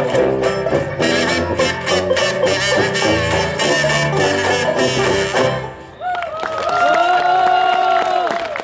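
Banjo band playing a bouncy, fast song, with several plucked banjos over a tuba bass line. About five and a half seconds in the music breaks off, and the band comes back in on one long held final chord.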